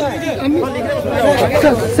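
Several men's voices talking over one another: crowd chatter at close range.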